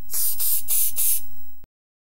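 Aerosol spray-paint can hissing in several quick spurts for about a second and a half, then cutting off suddenly.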